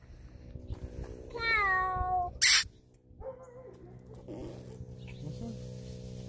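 A high-pitched, drawn-out call that glides down in pitch, about a second long, followed at once by a short hiss; a faint steady low hum lies underneath.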